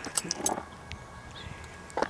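A few light clicks and scuffs in the first half second as a sneaker steps onto a skateboard deck on a concrete sidewalk, then only faint outdoor hiss.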